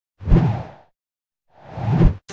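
Two whoosh transition sound effects. The first sweeps in about a quarter second in and fades within half a second; the second swells up toward the end. Each has a low thud at its peak.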